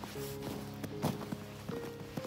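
Footsteps in snow, several steps in quick succession, over background music of soft held notes.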